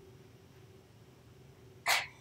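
A quiet pause with a faint steady hum that fades out, then near the end one short, sharp vocal sound from the man, such as a cough or a quick breath.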